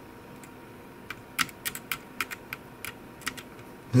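A quick, irregular run of about a dozen light, sharp clicks over two seconds from hands working the bench test gear: the battery clip leads and the clamp meter.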